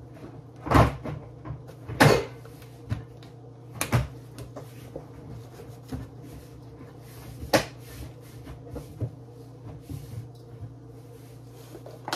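Plastic shaker bottle of garlic salt being shaken and knocked over a bowl of ground meat: a few sharp knocks, the loudest at about one, two and four seconds in and again past seven seconds, with fainter taps between. A steady low hum runs underneath.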